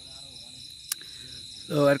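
Steady high-pitched chirring of night insects, with a single sharp click about halfway through and a man's voice starting near the end.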